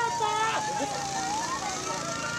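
A siren's long single tone slowly dips and then rises again about halfway through, over a steady rushing noise, with people's voices calling out at the start.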